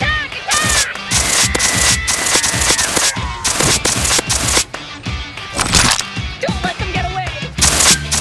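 Background music over a rapid series of sharp blasts like gunfire sound effects, repeating in quick bursts.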